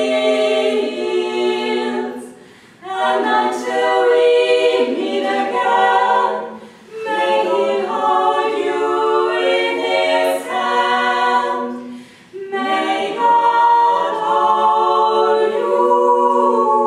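Women's barbershop quartet singing a cappella in four-part close harmony, holding long chords in phrases broken by three short pauses for breath.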